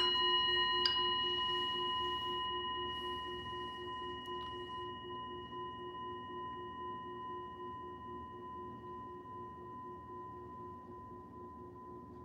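A metal singing bowl struck once, ringing with several overtones and fading slowly over about twelve seconds while its lowest tone pulses and wavers. A light tap sounds about a second in.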